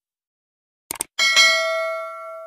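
Subscribe-button sound effect: a quick double mouse click about a second in, then a bright bell ding that rings on and fades.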